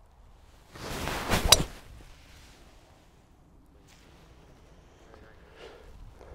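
A tee shot with a driver: a short rising whoosh of the club through the air, ending in the sharp crack of the clubhead striking the ball, about a second and a half in.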